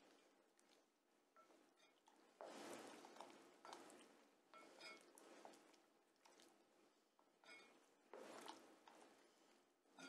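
Wooden spoon stirring a thin sauce of melted margarine, milk and mineral water in a glass bowl. The swishing is faint and comes in a few short spells, with near silence between them.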